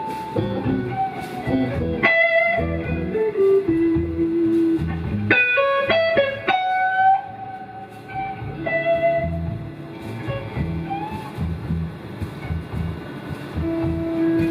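Live instrumental band music led by electric guitar, over electric bass and drums. The guitar plays a stepwise falling run into a held note and sustained single-note lines, with sharp chord hits about two seconds in and again around the middle.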